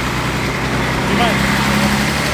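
A heavy passenger vehicle's motor running close by with a steady low hum that grows stronger about a second in, over street noise.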